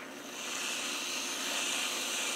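Aerosol can of whipped cream dispensing cream in one continuous hiss that builds over the first half second and then holds steady.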